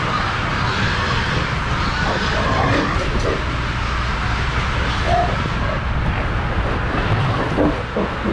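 Steady drone of a hog barn's ventilation fans, with a few short pig grunts and squeals over it.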